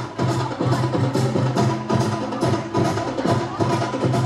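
Brass-and-drum fanfare band playing: brass instruments holding notes over a steady, evenly spaced drum beat.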